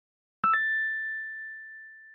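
A bright, bell-like 'ding' sound effect: two quick strikes about half a second in, then a single high ringing tone that fades away slowly.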